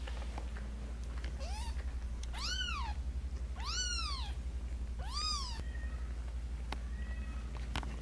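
A newborn kitten mewing four times: short, high-pitched cries that rise and fall in pitch, over a steady low hum. A few faint clicks follow near the end.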